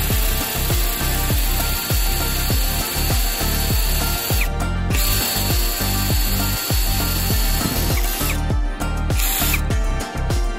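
Cordless drill boring a hole through PVC pipe: its motor whines steadily, cuts out briefly about halfway, runs again and winds down about 8 seconds in.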